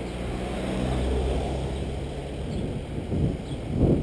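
A car passing close by, its engine humming steadily for the first couple of seconds and then fading. Wind buffets the microphone near the end.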